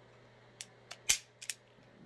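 Ruger Super Redhawk Toklat .454 Casull revolver dry-fired empty in double action: a run of about five sharp metallic clicks from the trigger, cylinder and hammer, the loudest just after a second in.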